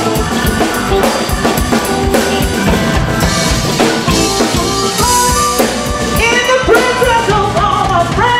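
Live band playing: drum kit with bass and electric guitars, the drums busy with rapid hits in the first half. About six seconds in, a lead line with bending pitch comes in over the band.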